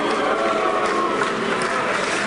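Large crowd applauding and cheering steadily, a dense wash of clapping with scattered shouted voices.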